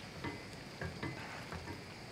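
Wooden spoon stirring chicken into a thick cream sauce of vegetables in a pot, with a few soft, wet scrapes over a faint hiss.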